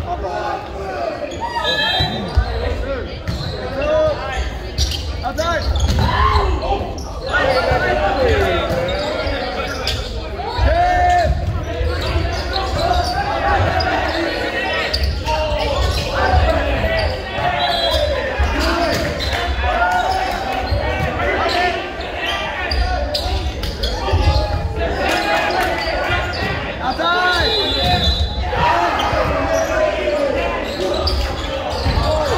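Indoor volleyball rally sounds in an echoing gym: the ball being struck and thudding, with players' and spectators' voices shouting and calling throughout. A few short shrill tones sound about two seconds in, near the middle and near the end.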